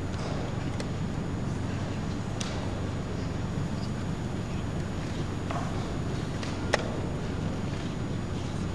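Blitz chess play: wooden pieces set down on a wooden board and the chess clock pressed, heard as a handful of short sharp clicks and knocks, the loudest a little before the end, over a steady room hum.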